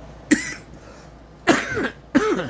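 A man coughing twice, a short cough about a third of a second in and a longer one near the end.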